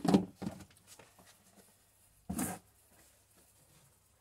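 Plastic lid closed onto a plastic tub with a loud clunk, followed by a few softer knocks. There is one more handling noise about two and a half seconds in as the tub is lifted away.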